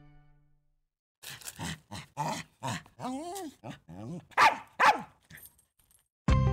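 Small dog yapping in a quick series of about a dozen short, high barks starting about a second in, with a brief whine in the middle and the loudest yaps near the end.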